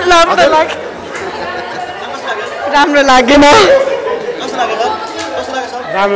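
Speech only: several people talking and chattering close to the microphone, one voice louder about halfway through.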